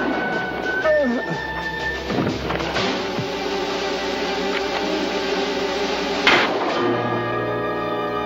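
Dramatic orchestral underscore with sustained chords, and a sharp crash-like hit about six seconds in.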